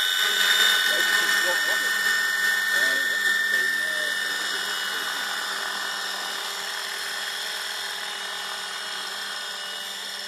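Radio-controlled helicopter flying away: a steady high-pitched motor and rotor whine that fades gradually as it gets farther off.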